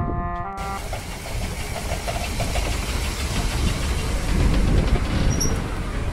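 Clarinet-like music with held notes that cuts off about half a second in, followed by dense outdoor background noise with a strong low rumble, a little louder near the end.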